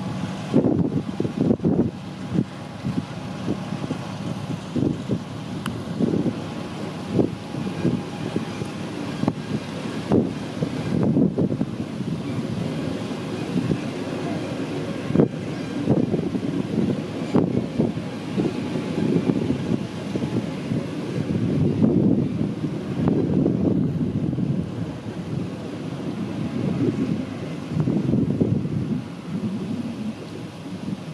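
Wind buffeting the microphone in uneven gusts over a MÁV M62 diesel locomotive's two-stroke V12 engine running.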